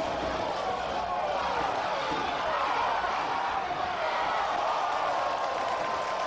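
Football stadium crowd noise: a steady din of many voices, with a drone that slowly wavers in pitch.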